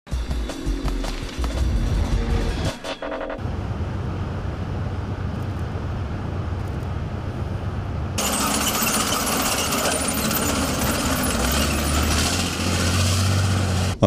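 A short musical logo sting for about three seconds, then a military motorboat's engine running steadily under a broad rushing noise, which becomes louder and brighter about eight seconds in.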